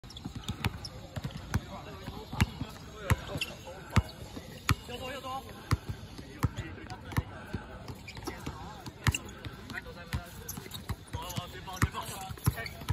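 A basketball dribbled on a hard court: a run of sharp thumps, about two bounces a second, with a few irregular gaps.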